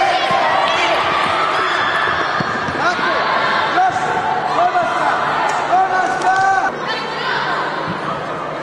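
Girls' high-pitched shouts and calls overlapping in a large indoor sports hall, with the odd thud of the ball being kicked.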